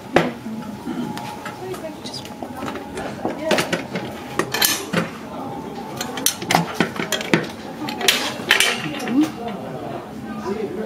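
Antique silver biscuit warmer being handled: its metal parts and cut-glass liners clink and knock against each other in scattered bursts of sharp clinks.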